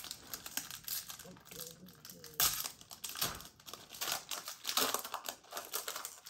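Foil wrapper of a Pokémon booster pack crinkling and crackling in the hands as it is opened, a dense run of short crackles with a sharper crack about two and a half seconds in.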